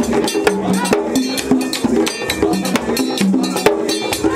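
Vodou ceremonial percussion: rapid, sharp metal bell-like strikes several times a second over drums, with voices singing a stepping melody.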